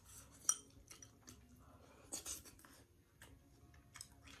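Quiet mukbang eating sounds: a sharp clink of chopsticks against a porcelain bowl about half a second in, then a short slurp of hotpot soup about two seconds in, and another small click at the end.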